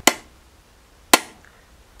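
Hammer striking a steel punch on a copper grater plate to raise its teeth one at a time: two single sharp metallic taps about a second apart, each with a short ring.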